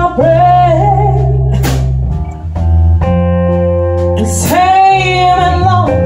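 Live blues-rock band music: a woman sings two long held phrases over electric guitar and steady bass notes.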